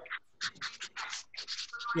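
A quick run of short, scratchy rustling noises, about ten in under two seconds, with a brief trace of a voice at the very start.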